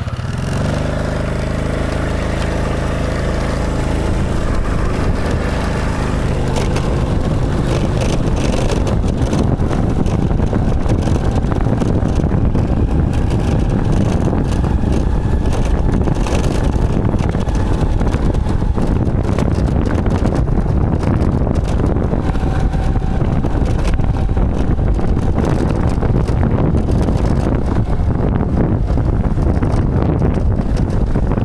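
Honda motorbike engine pulling away, its pitch rising over the first few seconds, then running steadily while riding along a rough lane, with wind buffeting the microphone.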